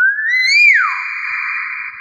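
Common hill myna calling: a loud clear whistle that rises, then slides down about a second in, running straight into a long, held, raspy note.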